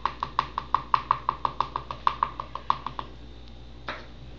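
Rapid, even ticking with a faint pitch, about seven ticks a second, as oil drips from a small plastic dropper bottle held upside down over soap batter. It stops about three seconds in, with one more tick near the end.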